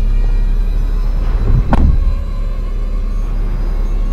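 Steady low rumble of a car's cabin with the vehicle running, and a single thump about two seconds in as a car door shuts.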